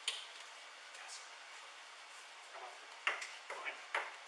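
Scattered sharp clicks and knocks of objects being handled during a search, over the steady hiss of a body-worn camera's microphone. The knocks come just after the start, then several close together about three to four seconds in.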